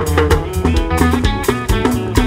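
Live Afro-fusion band playing with no singing heard: drum kit and a hand drum keep a steady beat under electric guitar and bass lines.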